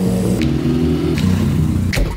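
BMW E30 M3's four-cylinder engine running as the car drives up, its note shifting in pitch, over background music.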